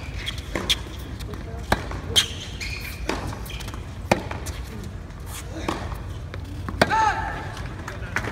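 Tennis rally: sharp pops of racket strings hitting the ball and the ball bouncing on a hard court, about one a second, over background chatter from spectators. A short voice is heard near the end.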